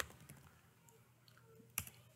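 Quiet room tone with a few faint computer keystrokes, then one sharp click near the end.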